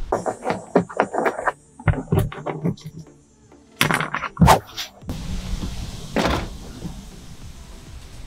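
Irregular knocks and clicks of plastic trunk trim and its carpeted liner being handled and pulled back inside a Subaru WRX trunk, with two louder knocks about halfway through, over background music.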